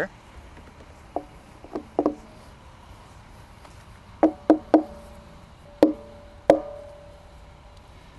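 Rubber mallet tapping on an oak barrel to knock the bung loose: about eight sharp knocks, a few spaced taps, then a quick cluster of three, then two more, the last two followed by a short ringing tone from the barrel.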